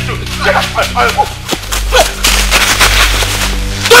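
Film soundtrack: a low sustained music drone that shifts to a deeper note about a second and a half in. Faint shouting comes in the first second, and a few sharp cracks fall in the middle.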